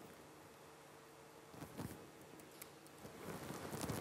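Quiet room tone with a few faint clicks and one short soft sound a little before halfway.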